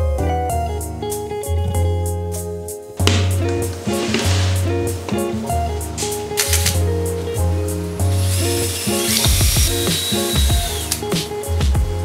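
Background music with a steady bass line. Near the end a power drill whirs for a couple of seconds and winds down, stirring the bucket of primer with a paddle mixer.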